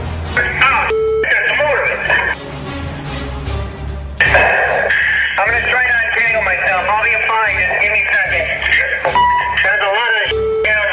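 Diver communication radio hissing with a garbled, tinny voice breaking through, as radio contact with the diver is lost, with short beeps near the start and end. Background music runs underneath.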